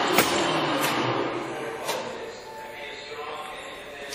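LeBlond Regal engine lathe running with no cut, its spindle turning at 363 RPM, with a few sharp knocks in the first two seconds. About halfway through it settles to a quieter, steady hum.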